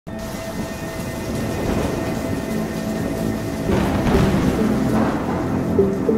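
Steady rain with a roll of thunder swelling a little over halfway through, under a held synth drone. Near the end a few short melodic notes come in as the track's intro begins.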